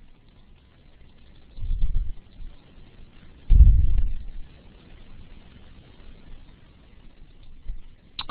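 Two low, muffled bumps on the microphone about two seconds apart, the second louder and longer, over a faint steady hiss.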